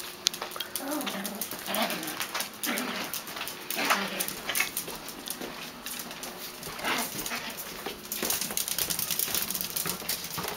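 Yorkshire terriers whimpering in a few short, faint whines, over many small clicks and taps on a hard tile floor that come thickest near the end.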